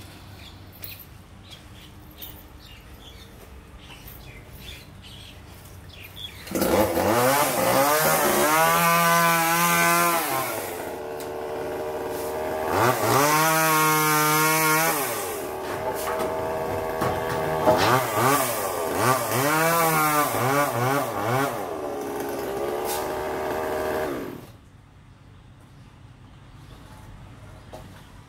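Petrol chainsaw revving up and down. It starts about six seconds in and is held at full revs for a couple of seconds twice, then stops near the end.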